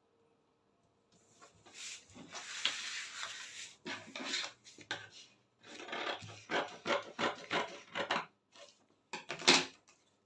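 Paper pattern pieces being handled, folded and slid across a wooden table: bursts of rustling and crinkling, the loudest near the end.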